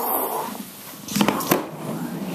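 A toddler's high squeal ending with a fall in pitch, followed a little over a second in by two sharp knocks of the camera being handled.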